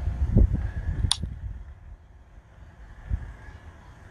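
Low, irregular rumbling on an outdoor microphone, typical of wind or handling, with one sharp click about a second in.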